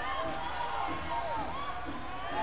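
Live sound of a basketball game on an indoor court: short squeaks of sneakers on the floor, the ball bouncing, and voices of players and spectators.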